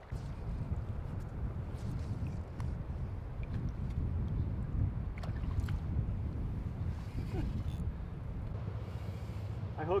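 Steady low rush of a shallow trout stream flowing, mixed with low wind rumble on the microphone, with a few faint clicks.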